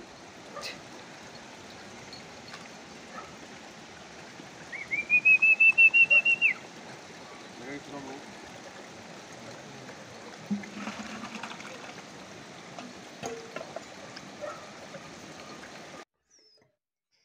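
A loud, quick trill of about a dozen high whistled notes, lasting under two seconds, about five seconds in, over a steady outdoor hiss.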